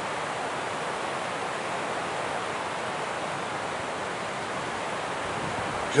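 Steady, even rushing noise outdoors, unchanging throughout, with no distinct events.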